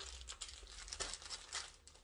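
Parcel packaging crinkling and tearing as it is opened by hand, in quick, irregular crackles.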